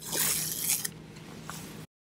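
Blue masking tape being peeled off a 3D printer's build plate, a ripping sound strongest in the first second and softer after it. The sound cuts off suddenly near the end.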